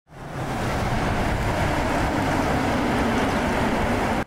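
Steady rushing roar of a motorcade of cars driving past on asphalt, mostly tyre and engine noise, fading in at the start.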